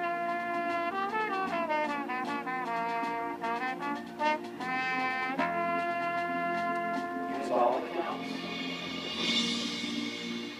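Marching band brass playing a melody in held and moving notes. Near the end the brass gives way to a bright, ringing shimmer of percussion.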